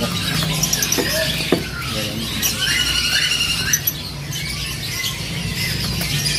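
Caged birds chirping and squeaking in short, high notes, with a quick run of repeated calls about halfway through, over a steady low hum.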